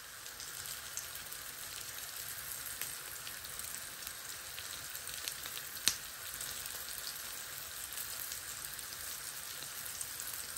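Chickpea patties frying in oil in a pan: a steady sizzle with scattered small crackles. Near the middle, a single sharp click as the spatula goes in to turn them.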